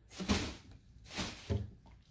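Boxed cosmetic and fragrance sets being picked up off a wooden table and moved: three short knocks and scrapes of packaging being handled.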